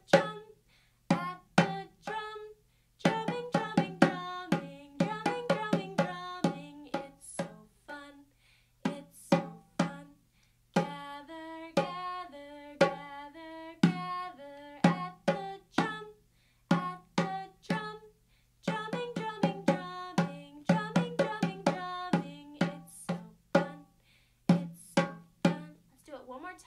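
A woman singing a simple children's drumming song while beating a djembe with her hands in a steady rhythm, the drum strokes landing on the beats of each line, with a few short breaks between phrases.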